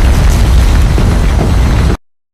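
A loud, heavily distorted, bass-heavy blast of noise, the 'triggered' meme sound effect, that cuts off abruptly to silence at the end.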